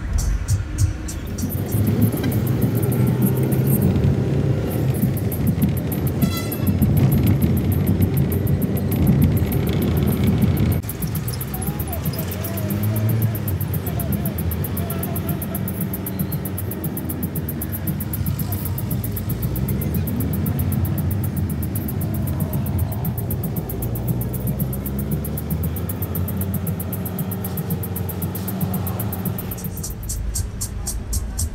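Cabin noise of a moving passenger microbus, engine and road, mixed with music and voices. The sound changes abruptly about eleven seconds in.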